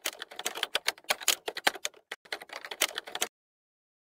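Sound-effect clicks like fast typing on a keyboard, a rapid, irregular run of sharp clicks that cuts off suddenly a little over three seconds in.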